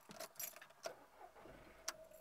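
A bunch of keys jangling in a hand: a few short jingles, then a single sharp click shortly before the end, the loudest sound.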